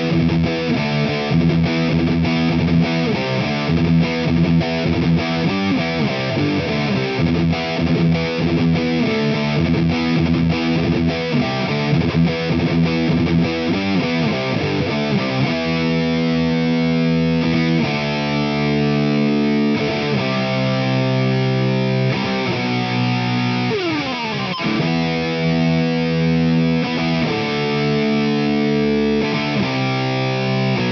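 Distorted electric guitar playing the verse riff: fast palm-muted triplet chugs on the low E string broken by E and D power chords. About halfway through it switches to the chorus, long ringing power chords, with a slide down in pitch a little past two-thirds of the way.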